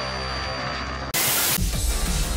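Old-television sound effect in an intro: a steady electrical hum with a thin high whine, cut about a second in by a sudden loud burst of TV static, then a low rumble with music underneath.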